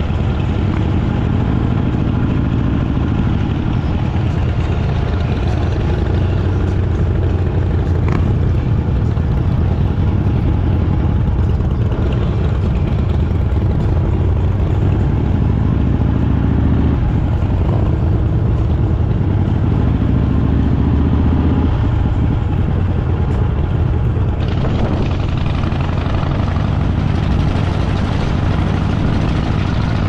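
Motorcycle engine running steadily at cruising speed, heard from on the moving bike with wind and road noise; the sound turns brighter and hissier about 24 seconds in.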